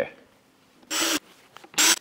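Two short rubbing sounds, about a second in and near the end, as a pre-oiled foam air filter is pushed into its cage in a motorcycle airbox.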